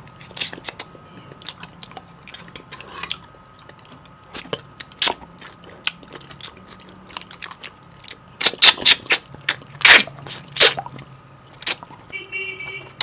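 Close-miked mouth sounds of eating beef bone marrow with meat on the bone: wet sucks, smacks and chewing that come in clusters of sharp clicks, loudest in the second half.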